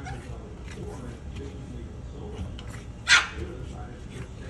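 A Boston terrier barking once, a short sharp bark about three seconds in.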